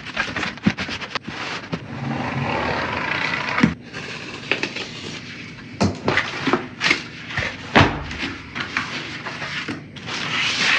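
Flattened cardboard boxes being handled and unfolded: sheets scraping and rustling against each other, with a string of sharp cardboard knocks and slaps. The loudest is a heavy thump near the end.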